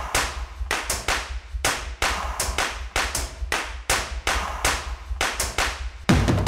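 A quick, somewhat uneven run of sharp clap-like hits, about three or four a second, each with a short ringing tail, over a steady low bass hum. It sounds like the percussive opening of a soundtrack cue.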